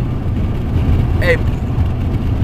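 A steady low rumble, with a man's voice saying "Hey" once about a second in.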